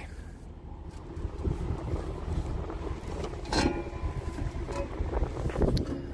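Wind buffeting the microphone as a low, uneven rumble, with a brief sharper sound about three and a half seconds in.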